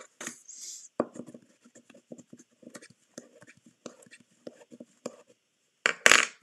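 Bone folder rubbed along the creases of a small cardstock paper bag: a run of quick, short scraping strokes, with a louder burst of noise right at the end.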